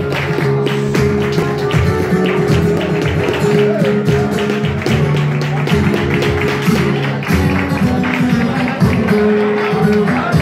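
Live flamenco guitar, played with rapid strums and sharp percussive strokes over sustained notes.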